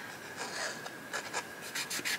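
Fine pen scratching on paper in short strokes while outlining a drawing, the strokes coming quicker near the end.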